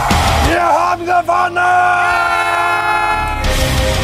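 A person's long, held yell of triumph from about half a second in until just past three seconds, with loud heavy metal music before and after it.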